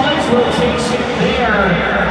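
Arena announcer's commentary over the public-address system, echoing, over a crowd's murmur and a steady low rumble.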